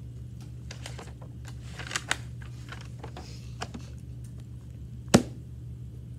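Scattered small clicks and taps from a class working problems at their desks, over a steady low room hum. A sharp knock, the loudest sound, comes about five seconds in.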